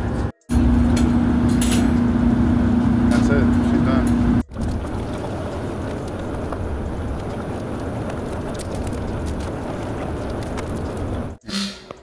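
Rebuilt Lincoln 1000 conveyor pizza oven running. For about four seconds there is a steady hum with a strong low tone, then after a cut a steady, even blower noise while the conveyor carries a pizza through.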